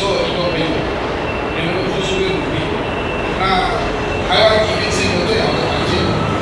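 A man speaking Mandarin into a handheld microphone, his voice carried over a steady, fairly loud background noise.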